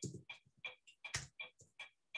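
Computer keyboard keys tapped faintly in a quick, even run, about five presses a second.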